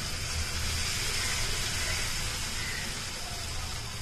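Batter-coated nendran banana slice sizzling steadily as it deep-fries in hot oil, with a low steady hum underneath.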